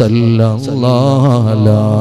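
A man chanting an Islamic devotional refrain in a slow, melodic voice, holding long, slightly wavering notes.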